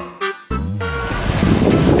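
Background music cuts off about half a second in. Steady, loud wind noise on the microphone follows, with ocean surf beneath it.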